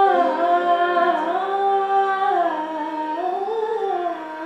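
A woman singing a slow Hindustani classical vocal line, likely in raga Bhimpalasi, her voice gliding smoothly between held notes over a steady drone.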